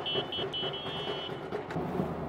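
Outdoor street noise, a steady wash of traffic sound, with a high, pulsing electronic beeping that stops a little past halfway through.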